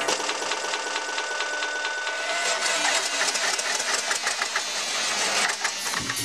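Techno track in a breakdown: a rapid, ticking, machine-like percussion loop with high hi-hats and no kick drum or deep bass.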